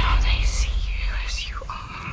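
A breathy whispered voice over a deep, steady rumble that fades away.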